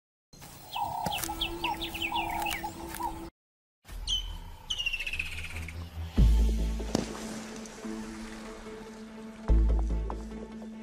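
Bird chirps and calls, cut by a short dropout, followed by background music with held notes and two deep booming hits, the first about six seconds in and the second near the end.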